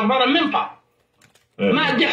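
A person talking, broken about a second in by a short pause that holds a few faint clicks.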